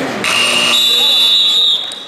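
A referee's whistle blown in one long, shrill blast of about a second and a half, jumping higher in pitch partway through and cutting off sharply, over chatter in the gym.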